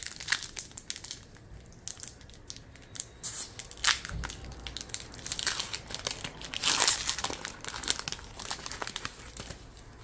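Foil wrapper of a Pokémon trading-card booster pack crinkling as it is torn open and crumpled in the hands. The crackling comes in irregular bursts, loudest about four seconds in and again around seven seconds in.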